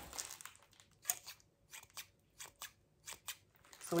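Small garden pruning shears being snipped open and shut, the blades and spring clicking sharply about a dozen times, often in quick pairs.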